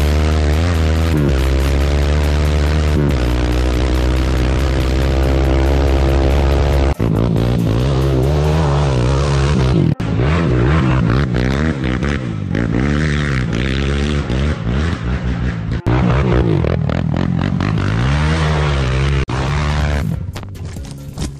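Sport quad's single-cylinder four-stroke engine revving up and down over and over under hard riding. The sound cuts off abruptly for an instant several times.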